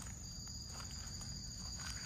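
A faint, steady high-pitched chorus of insects, with a few soft footsteps on leaf litter.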